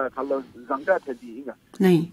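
Speech only: a voice talking, with a short, loud hiss-like burst near the end.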